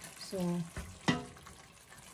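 A spoon stirring a thick, simmering stew in a stainless-steel pot, with one sharp knock about halfway through.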